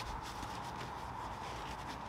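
Fabric pouch being handled, a quiet rustling and rubbing of cloth.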